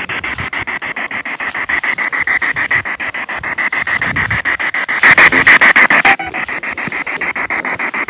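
P-SB7 spirit box sweeping the radio band, played through a JBL portable speaker: radio static chopped rapidly and evenly, about ten times a second. A louder, brighter burst of static comes about five seconds in and lasts about a second.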